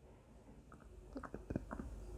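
Near silence, then faint, scattered small clicks from a little under a second in.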